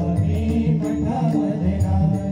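A Marathi devotional bhajan in full swing: pakhawaj and tabla drumming under a harmonium's held notes, with voices chanting the refrain.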